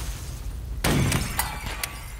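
A sudden loud crash with a low boom about a second in, followed by a couple of sharp clicks: an impact sound effect in an edited title sequence.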